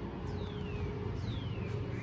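A bird calling twice: two clear whistles, each sliding downward over about half a second, with a steady low background noise beneath.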